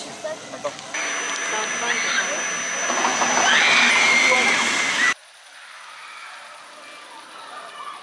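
An Intamin launched motorbike-style straddle coaster train rushing past close by on low track, a loud rush of wheels on steel with a rising whine that grows for about four seconds and cuts off suddenly.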